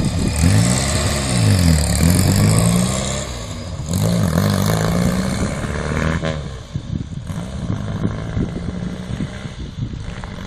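A car engine accelerating, its pitch climbing and dropping back several times as it changes gear. It then runs more evenly at a lower level in the second half.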